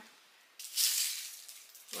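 A short rustle of plastic packaging as a knife is handled and unwrapped, starting about half a second in and fading away.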